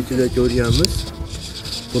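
A voice speaks briefly, then a steady, high-pitched insect buzz carries on in the background.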